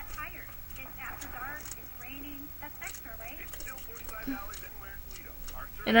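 Faint, indistinct voices murmuring in the background, with no clear scraping of the clay tool audible; a louder, close woman's voice breaks in right at the end.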